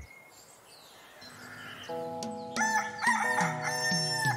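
A rooster crowing, a wake-up cue, as the music of a children's song comes in about halfway through; the first second or so is quiet.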